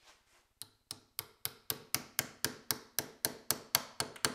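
A carving knife chopping into a wooden branch in quick, even strokes, giving sharp knocks about four a second from about half a second in.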